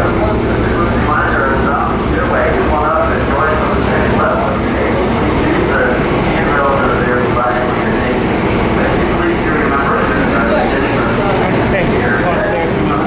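A ferry's engine running with a steady low hum, under the chatter of many passengers talking at once.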